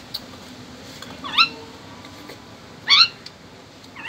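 Hill myna giving two short, loud calls, each rising sharply in pitch, about a second and a half apart.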